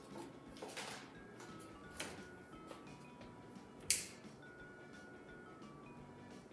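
Soft background music of scattered steady tones, with three brief noise bursts, the loudest about four seconds in.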